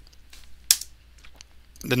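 Computer keyboard key press: one sharp click about two-thirds of a second in, with a few much fainter taps around it.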